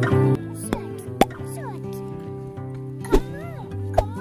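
Background music with sustained notes, over which a small child's high-pitched voice gives short rising-and-falling calls. There are a few sharp clicks spaced about two seconds apart.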